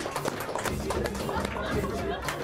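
Indistinct voices and chatter over background music.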